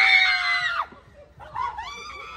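A young woman's long, high-pitched scream of fright at being startled, breaking off just under a second in, followed by a second, shorter cry near the end.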